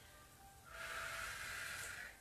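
A person's steady exhale, about a second long, starting about two-thirds of a second in, over faint background music.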